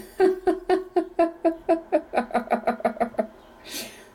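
A woman laughing: a long run of quick, even 'ha' pulses, about six a second, that stops a little over three seconds in, followed by a sharp intake of breath.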